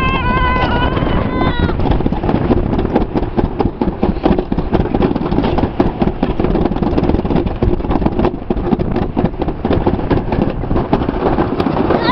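Summer toboggan sled running fast down a stainless-steel trough track: a continuous rattling rumble. A child yells for the first second or two.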